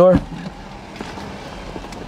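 A short spoken word, then a low steady background with two faint clicks about a second apart as a sports car's passenger door is unlatched and opened.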